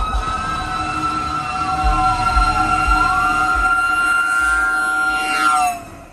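Fire engine's air horn sounding one long steady chord over its siren, which winds down and back up once. Near the end the pitch bends lower and the sound drops away sharply as the truck goes by.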